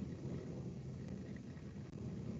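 Faint, steady background noise: a low rumbling hiss with no distinct events.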